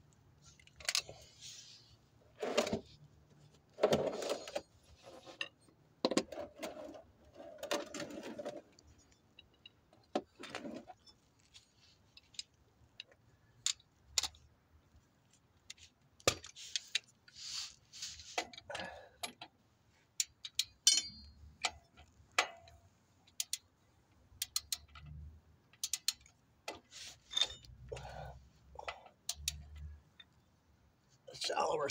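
Metal hand tools clinking and rattling as sockets, a ratchet and the drain plug are picked up and set down during refitting of the differential drain plug. There are scattered single clinks and a few short runs of quick clicks.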